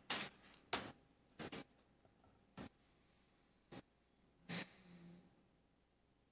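About seven faint, scattered knocks and clicks over an open meeting-room microphone, with a faint thin high tone wavering through the middle and a brief low hum near the end.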